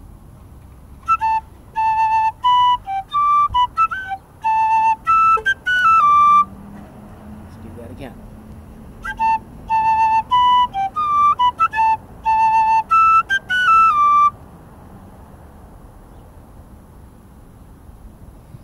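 Metal tin whistle playing two short phrases of a Scottish strathspey, each about five seconds long with a pause between them. The notes are crisply tongued, with Scotch snaps: a very short clipped note snapping onto a longer one.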